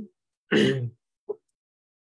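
A man clearing his throat once, briefly, about half a second in, followed by a short faint sound a moment later.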